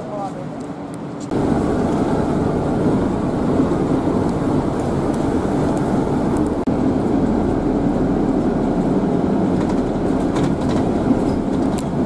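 Steady rumble and road noise of a moving vehicle, heard from on board. It starts abruptly about a second in, where the quieter sound before it cuts off.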